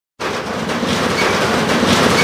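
A loud, steady rumbling and rattling noise that starts a fifth of a second in.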